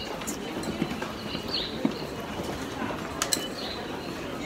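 Footsteps on a hard tiled subway-station floor, with a few sharp clicks standing out, under a steady murmur of voices and station noise.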